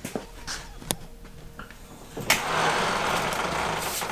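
Hydraulic floor jack being let down under a side-by-side: a couple of knocks, then about two seconds in a steady rushing hiss starts suddenly and carries on.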